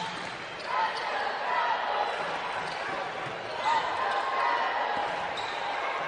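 Game sound from a basketball court: the ball being dribbled on the hardwood floor over steady arena background noise.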